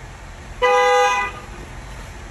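A single short vehicle horn toot, held at one steady pitch for under a second, starting about half a second in.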